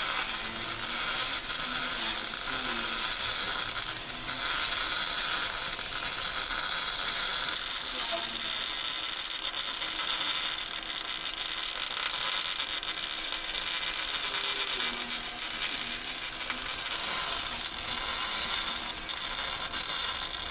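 Electric arc welding of steel: the arc gives a continuous, even crackle and sizzle as a bead is laid.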